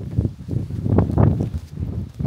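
Footsteps of a person walking on a path, several steps in a row, with clothing and camera handling rustling against the microphone.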